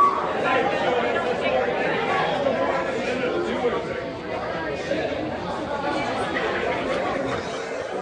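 Indistinct crowd chatter: many voices talking at once, with no single voice standing out.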